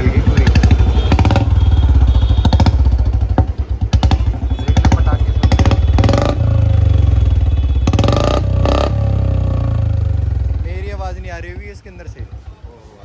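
Royal Enfield Bullet 350's single-cylinder engine running loud through a short 'mini Punjab' aftermarket silencer, the throttle blipped several times so the exhaust note swells and drops. The engine sound fades out near the end.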